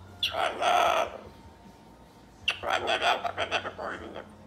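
Moluccan cockatoo babbling in mumbled, speech-like chatter, in two bursts of about a second each, the second starting about two and a half seconds in.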